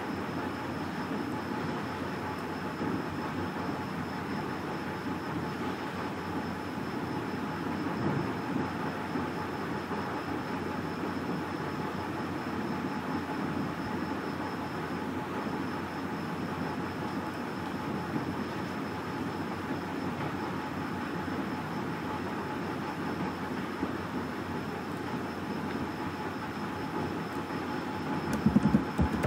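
Steady background noise: a continuous rumbling hiss with a faint, steady high-pitched whine over it.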